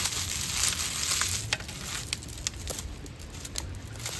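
Dry, crumbly leaves crackling and crunching as they are squeezed tightly in a fist, with many small sharp crackles that thin out toward the end.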